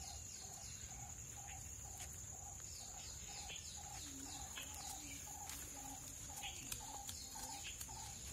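Outdoor rural ambience: a bird repeating a short low note about twice a second, over a steady high insect whine, with brief chirps from other birds and a few faint clicks.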